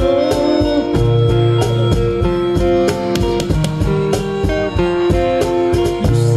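Live acoustic guitar playing an instrumental passage of a ballad, with a cajón keeping a steady beat.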